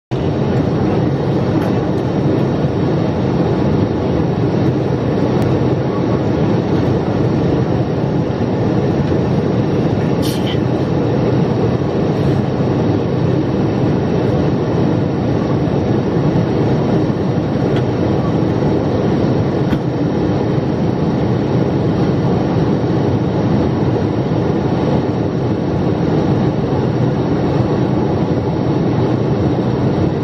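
Steady engine and airflow noise inside the cabin of a Boeing 777 jetliner on descent, an even rushing roar heard from a window seat beside the engine. A brief high chirp comes about ten seconds in.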